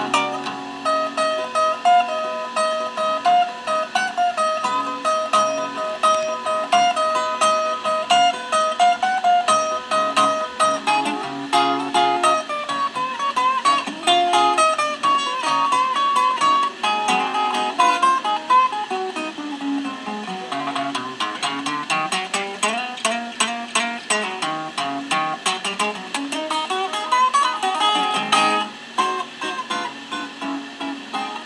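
Resonator guitar played solo: an instrumental blues passage of picked notes, with repeated high notes over a moving bass line and quick runs.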